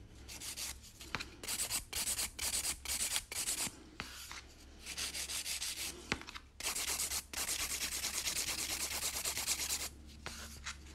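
Hand nail file rubbing back and forth on a gel nail in quick, even strokes, shaping and smoothing it. The filing comes in three runs with short pauses between, the last the longest.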